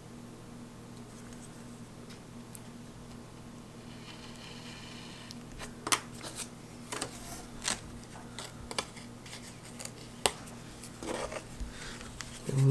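A single-edge razor blade drawn along a straightedge, slitting the foam wing tip with a faint scrape about four seconds in. This is followed by a series of sharp clicks and taps as the blade and straightedge are handled on the table. A steady low hum runs underneath.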